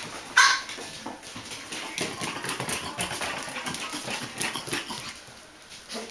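Eight-week-old Bichon Frisé puppy giving one short, sharp yip about half a second in, the loudest sound, followed by softer puppy noises and small clicks as the puppies play.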